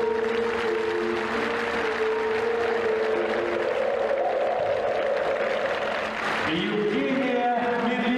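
Figure-skating program music ends on long held notes about halfway through, under arena crowd applause and cheering that carries on after the music stops. Near the end other music comes in.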